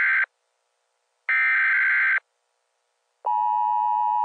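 Electronic alert tones in the style of the Emergency Alert System, used as the weather segment's intro: harsh buzzing data bursts about a second long with a second's silence between, then a steady two-note attention tone that starts about three seconds in.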